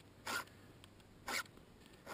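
A file drawn through the cutting teeth of a Stihl chainsaw chain to sharpen it, in two short rasping strokes about a second apart.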